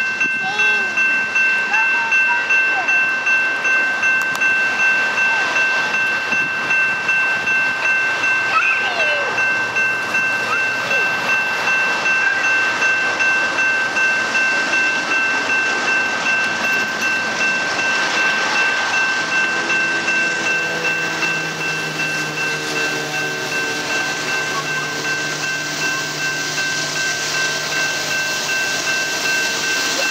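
Norfolk Southern GE Dash 9 diesel locomotives, their 16-cylinder engines working under power and blowing smoke, as an intermodal train pulls off a siding. The rumble builds, and a steady pitched engine note comes in over the second half. A steady high-pitched two-tone whine runs underneath throughout.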